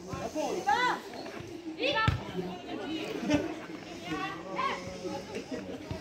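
Women footballers shouting and calling to each other during play, several short high-pitched shouts rising and falling in pitch, with a thump about two seconds in.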